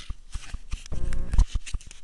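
Handling noise from a small camera held in the hand: rapid clicks, knocks and rubbing against its microphone, with a brief low hum about a second in.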